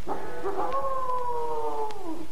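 Wolf howl sound effect: one long call, held steady and then sliding down in pitch near the end.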